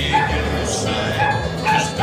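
A dog barking a few times over steady background music.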